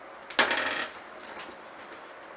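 A short, sharp clatter about half a second in, lasting about half a second.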